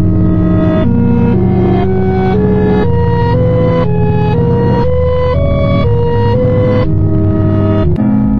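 Electronic background music: a sustained low bass with a fast pulsing texture under a melody of held notes that step up and down about twice a second.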